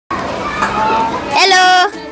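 Children's voices: a busy jumble of chatter, then one child's loud, high call held for about half a second near the end.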